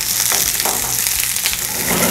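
Onion, yellow chili peppers and garlic sizzling steadily in hot oil in a frying pan, stirred with a wooden spoon with a few light scrapes.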